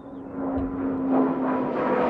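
Embraer A-29 Super Tucano's Pratt & Whitney PT6A turboprop engine and propeller drone on an approaching low pass, growing louder with a tone that slides slowly lower.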